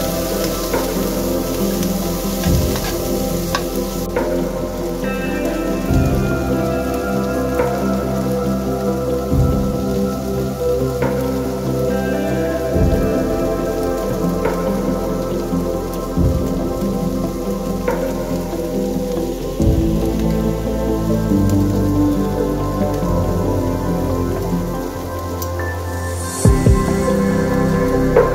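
Ambient instrumental music with held, layered tones and a soft low pulse about every three and a half seconds. A frying hiss from the pan of onions and peppers runs under it for the first few seconds, then stops abruptly.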